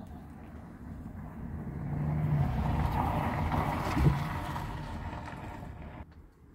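A motor vehicle passing by: a low engine hum swells over a couple of seconds, is loudest in the middle with a brief sharper peak about four seconds in, then fades away.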